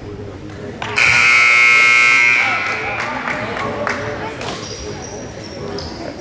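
Gymnasium scoreboard buzzer sounding once, a loud flat electronic tone that starts sharply about a second in, holds for over a second, then dies away, over crowd chatter.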